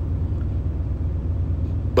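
Steady low hum in the background of the voice recording, with no speech over it.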